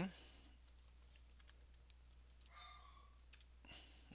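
Faint, scattered clicks of typing on a computer keyboard against near-silent room tone.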